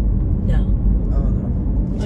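Steady low road and engine rumble inside a car's cabin while driving.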